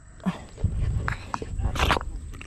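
Foot and sandal squelching in thick, sticky mud that holds the sandal fast, with a louder wet suck near the end.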